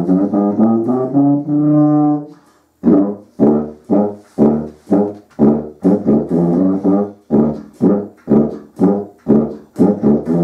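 An antique E-flat helicon, a circular bass tuba made by Boosey around 1870–1880, being played. It opens with a quick run of notes into a held note, then after a brief pause plays a line of short, separated notes at about two a second.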